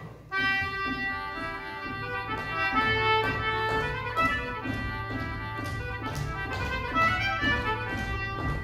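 A handmade concertina starts a reel: reedy notes in quick runs begin suddenly just after the start. A steady low note joins underneath about three seconds in.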